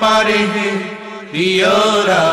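A man singing a Bengali devotional elegy without words in this stretch, holding long, wavering notes. A new phrase begins with a rising slide about a second and a half in.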